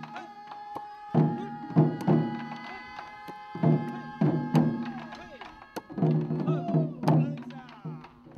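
Taiko drums beating a rhythm together with the dull thuds of a wooden mallet pounding steamed rice in a wooden mortar for mochi. Voices call out in time, and a long held note sounds over it.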